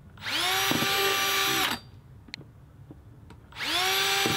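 Electric drill with a 3/8-inch bit boring holes through a plastic bucket lid: the motor spins up to a steady whine for about a second and a half and stops, then starts again near the end.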